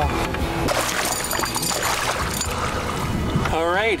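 A freshly netted muskie thrashing in a landing net beside the boat, with repeated splashes of water and wind on the microphone. A man shouts near the end.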